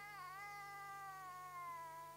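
A baby's single long, high-pitched vocal sound, faint, wavering in pitch at first and then sinking slightly.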